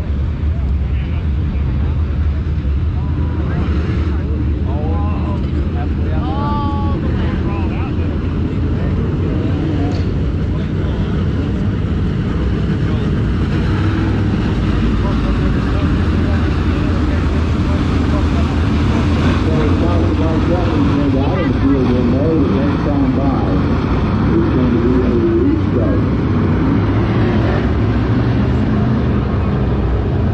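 A field of UMP Modified dirt-track race cars running at speed, their V8 engines making a loud, continuous drone that swells a little as the pack passes close by midway.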